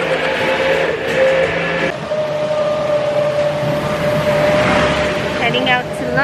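Tricycle running along a street, heard from inside the passenger cab: a steady road and motor noise, with a steady tone setting in about two seconds in.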